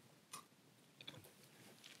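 Near silence with a few faint, short clicks and mouth sounds: a piece of star fruit being bitten and chewed.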